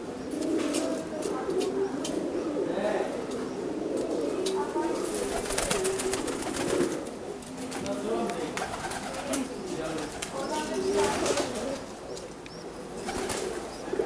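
Domestic pigeons cooing over and over, low wavering calls, with scattered sharp clicks among them.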